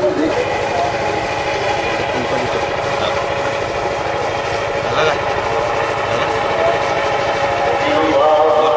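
A man's voice chanting Arabic prayer through loudspeakers, drawn out in long held notes with no breaks.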